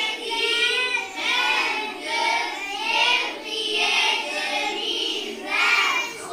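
A class of children singing together in unison, sustained high-pitched voices with no break.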